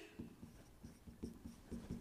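Faint, irregular taps and light scratches of a pen writing by hand on the glass face of an interactive touchscreen board.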